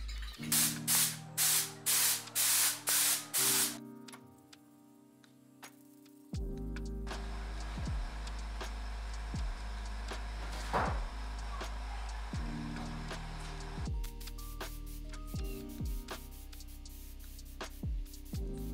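A compressed-air gravity-feed spray gun spraying paint: about eight short trigger bursts of hissing air in the first few seconds, then a longer steady spray hiss after a pause.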